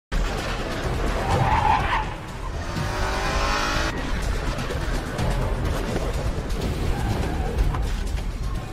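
Vehicle sounds from a pickup truck: a tyre squeal as it skids midway through, cut off abruptly, over a steady noisy bed.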